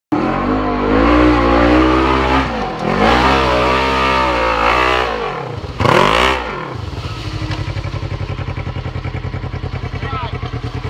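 Polaris RZR 1000 side-by-side's parallel-twin engine revving hard, its pitch rising and falling for about five seconds. It drops off briefly, gives one more sharp rev, and then settles to a steady, lumpy idle.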